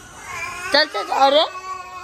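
A shrill, high-pitched cry whose pitch bends up and down, loudest from about half a second to a second and a half in, then trailing into a thin steady tone.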